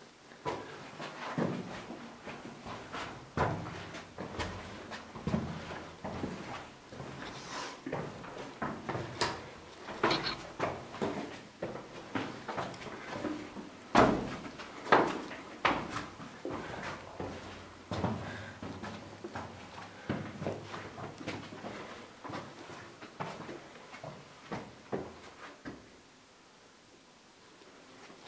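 Irregular footsteps, scuffs and knocks on stone as someone moves through a narrow stone passage, mixed with camera handling knocks. The loudest knocks come about halfway through.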